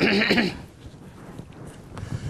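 A person's short laugh in the first half-second, then a quiet pause with only room tone.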